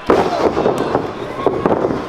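A wrestler's body crashes onto the ring canvas in one sharp slam right at the start. Voices shout from the crowd afterward.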